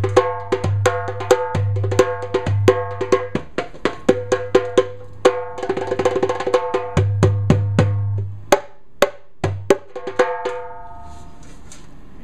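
Turkish-style metal darbuka (goblet drum) played with the fingers: a quick rhythm of deep ringing bass strokes from the centre of the head and sharp, bright strokes at the flat rim, with a fast flurry of finger strikes around the middle. The playing stops about ten seconds in.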